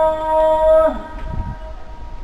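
A muezzin's voice chanting the afternoon ezan (the Islamic call to prayer), holding one long steady note that breaks off about a second in and dies away in echo, leaving outdoor background noise.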